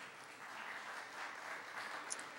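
Faint audience applause in a hall, swelling slightly after a joke.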